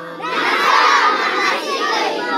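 A big group of children shouting together, a loud burst of many voices that breaks out shortly after the start and holds for about a second and a half.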